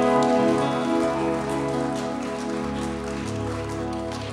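Live band playing a slow, quiet instrumental passage led by strummed acoustic guitar. Sustained chords ring and slowly fade, and a lower note comes in about three seconds in.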